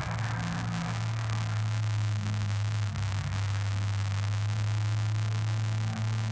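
Steady low electrical hum with an even hiss over it.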